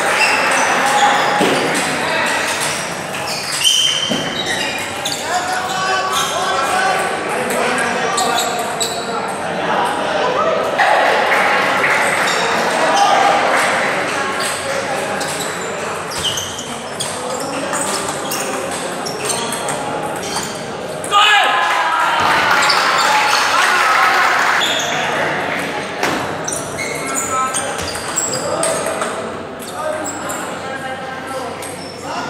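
Steady babble of many voices in a large, echoing hall, with the light clicks of a table tennis ball striking bats and the table during rallies. The voices get louder after a sharp knock about two-thirds of the way through.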